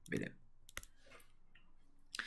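A single sharp click a little under a second in, followed by faint light ticks: a stylus tapping and writing on a tablet screen.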